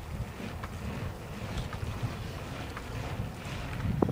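Wind noise on a handheld phone's microphone: a low, uneven rumble with faint scattered ticks.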